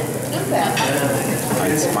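Egg omelette and fried rice sizzling on a hot teppanyaki griddle, over a steady low hum.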